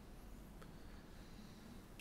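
Near silence: faint room tone with a low hum and one faint click about half a second in.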